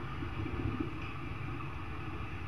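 A steady low hum with a faint noise haze and a few soft held tones, a background drone with no speech.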